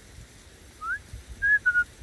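Shepherd's whistled commands to a working border collie: a short rising note, then two brief level notes, the last slightly lower.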